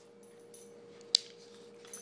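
A single sharp metallic click from the Taurus 740 Slim pistol's steel action as the freshly reassembled gun is handled, about a second in, over a faint steady hum.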